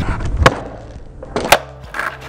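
Skateboard wheels rolling on asphalt, then a sharp pop of the tail about half a second in and a second sharp smack about a second later as the board lands a heelflip.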